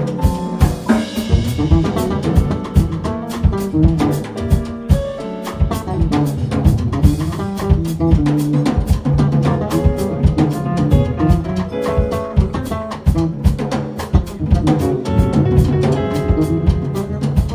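Jazz trio playing live: a drum kit keeps a busy beat under an electric bass guitar and an electric stage keyboard.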